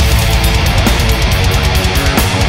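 Technical death metal studio recording: loud distorted electric guitars over bass, with quick, tightly packed drum hits.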